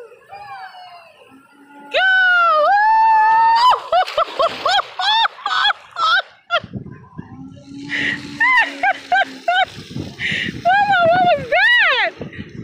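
High-pitched squeals and shrieks of excitement, a long rising squeal about two seconds in followed by quick short cries, as a toddler rides an inflatable water slide; water splashing in the slide's pool can be heard under the cries in the second half.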